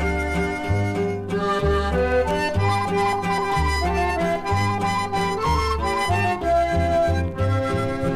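Instrumental break of a Mexican corrido played back from a vinyl LP: a melody line over a steady two-beat bass that alternates notes about twice a second, with no singing.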